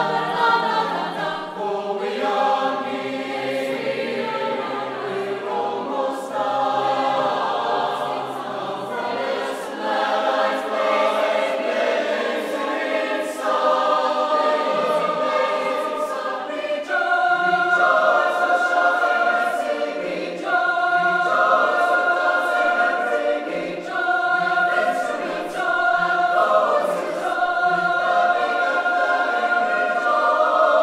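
A university chamber choir singing, many voices in sustained chords. From about halfway through, phrases of long held high notes recur, each a few seconds long with short breaks between them.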